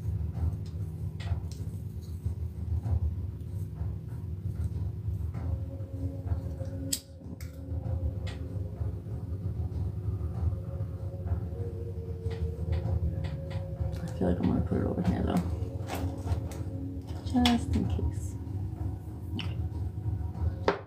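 Small clicks and knocks from lighting a glass jar candle with a lighter and handling it on the table, over a steady low hum with a few faint held tones.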